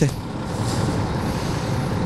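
Steady low engine rumble at an even level throughout.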